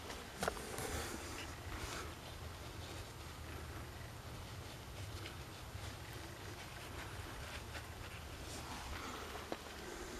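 Faint scraping and a few small clicks of a gloved hand and a hand tool working loose clay and mica-rich rock, over a low steady rumble.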